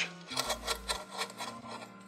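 Screwdriver tip scraping and twisting through scooter-deck grip tape in a bolt hole: a run of short, irregular rasping scratches that thin out towards the end, as the tape is cut clear of the hole.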